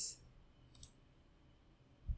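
A faint, short computer mouse click, a quick press-and-release a little under a second in.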